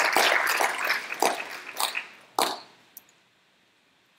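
Audience applause in a lecture hall, dense at first and thinning out over about two seconds, ending in a few last scattered claps.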